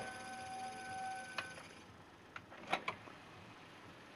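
Technics SL-PG300 CD player mechanism: a faint steady whine stops with a click about one and a half seconds in. A few sharp clicks follow as the disc drawer opens.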